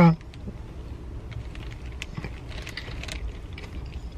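A person biting into and chewing a warm buttermilk biscuit with a crisp top: quiet, irregular little clicks and crunches of chewing.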